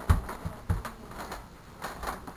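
Footsteps on a floor: three dull thumps in the first second and another near the end.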